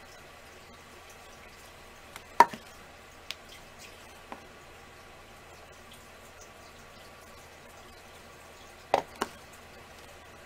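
Craft tools and supplies being handled on a work surface: a few sharp clicks and taps over a faint steady room hum. The loudest click comes about two and a half seconds in, lighter ones follow, and a close double click comes near the end.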